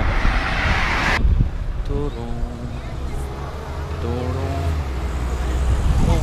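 Street traffic going by: a loud rushing sound in the first second that cuts off suddenly, then a steady low engine rumble that builds toward the end, with faint voices in the background.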